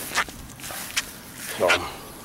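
Footsteps: two sharp steps, about a second apart.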